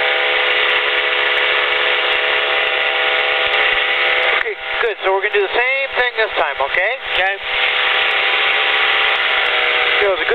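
Weight-shift trike's engine droning steadily at climb power, one even pitch throughout. For a few seconds in the middle a voice breaks in over the engine.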